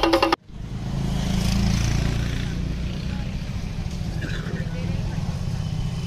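A fast, rhythmic music passage cuts off abruptly under half a second in. A steady low rumble follows, with faint voices in the background.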